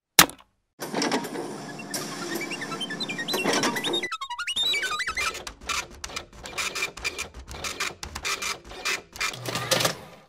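Sound effects of a cartoon computing machine. It starts with a sharp click, then gives a run of electronic bleeps stepping up and down in pitch, then rapid, steady clicking as it works and puts out its card.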